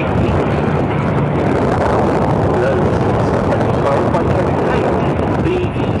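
Auster light aircraft's de Havilland Gipsy Major engine droning steadily as it flies past, with wind buffeting the microphone.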